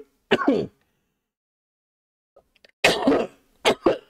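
A man clearing his throat and coughing in short bursts: one about half a second in, then three or four more in quick succession from about three seconds in.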